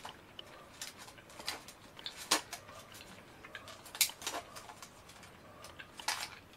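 Mouth sounds of a person chewing a tiny gummy candy: faint scattered wet clicks and smacks, with louder ones about two seconds in and again at four seconds.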